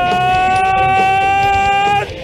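A man's voice holding one long, drawn-out shouted vowel, the pitch edging slowly upward, over entrance music. The held note cuts off suddenly at the end.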